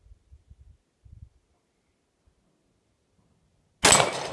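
A single .45 ACP semi-automatic pistol shot near the end, sudden and loud with a short ringing tail. A few faint low thumps come in the first second or so.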